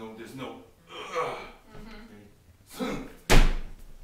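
Low voices, then a single sudden heavy thump about three seconds in, the loudest sound here, with a short boom in the low end.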